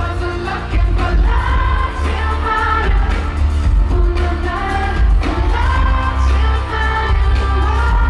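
Live pop song: a male singer singing into a handheld microphone over a band with keyboards and heavy, steady bass, heard through a large festival PA.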